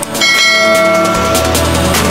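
Electronic dance music, with a bell-like ding of several ringing tones shortly after the start that fades over about a second and a half: the notification bell of a subscribe-button animation.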